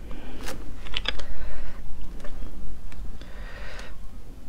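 Toothpicks clicking and scraping against sea snail shells as the meat is picked out, several sharp clicks in the first two seconds, then a brief hissing noise near the end.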